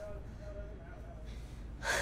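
A woman's sharp intake of breath near the end, as if gasping before speaking, over a steady low background hum.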